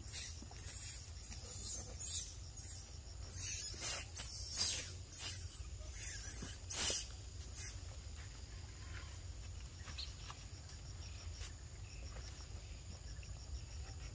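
A run of about a dozen short, high-pitched, hissy squeals from a macaque, packed into the first eight seconds. After that there is only a faint, steady, high insect drone.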